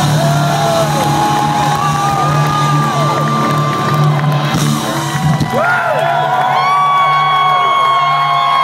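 A rock band playing live, holding a long, steady low note, while a crowd cheers and whoops loudly over it.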